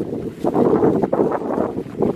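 Wind buffeting the microphone, a loud low rumble.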